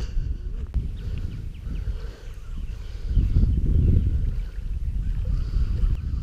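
Wind buffeting the camera's microphone: an uneven low rumble that swells about three seconds in.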